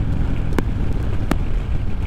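Harley-Davidson Road King Special's V-twin engine running steadily at highway speed, mixed with wind noise on the microphone. Two sharp clicks sound about half a second and about a second and a quarter in.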